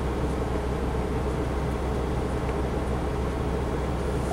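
Rear-mounted 400 hp Cummins ISL straight-six diesel idling, a steady low drone heard from inside the cab.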